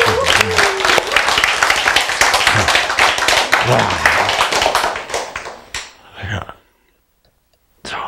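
An audience applauding, with some laughter mixed in, for about five seconds. The applause then dies away to near quiet.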